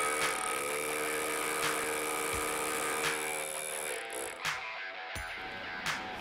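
Two Milwaukee cordless rotary hammers drilling into concrete slabs at the same time, a steady machine sound, with background music playing over it.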